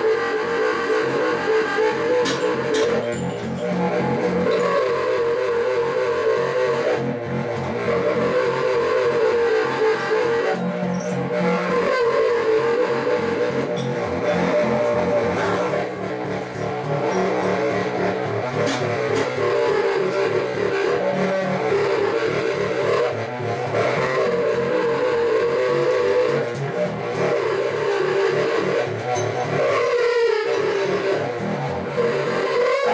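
Solo tubax, a compact contrabass saxophone, playing a continuous improvised drone. A steady middle-register tone is held with several pitches sounding at once over shifting low notes, with only brief breaks.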